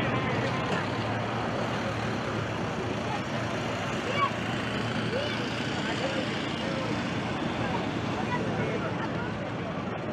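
Road traffic running steadily past a crowd of walkers, with many indistinct voices talking and calling over the traffic and one brief sharp sound about four seconds in.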